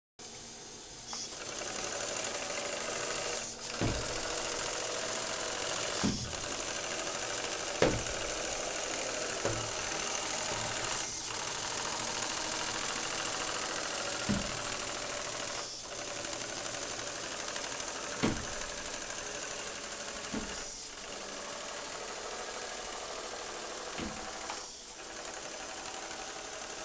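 A 5cc two-cylinder double-acting oscillating (wobbler) steam engine running steadily at speed, a fast even mechanical chatter, over a strong steady hiss. A few short low knocks are scattered through it.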